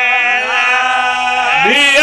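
A male reciter chanting a masaib lament in long, drawn-out held notes with a wavering pitch, gliding up to a higher held note about a second and a half in.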